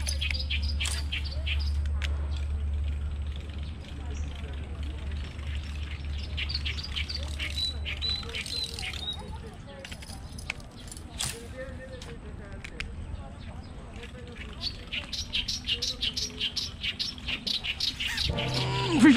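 Small birds chirping, with a short high trill about halfway through. A steady low hum runs under the first half, and near the end comes a quick run of ticks, several a second.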